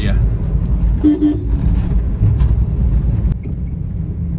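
Car cabin noise while driving: a steady low road and engine rumble. A click and a slight drop in level come about three seconds in.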